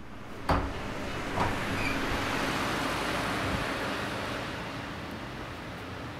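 A sharp knock about half a second in, then the rushing of a passing car that swells to a peak around the middle and fades away.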